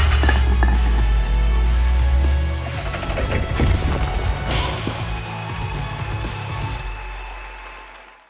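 Logo-animation sound design: a deep, sustained bass boom with clattering, shattering impact effects over music, which then decays and fades out toward the end.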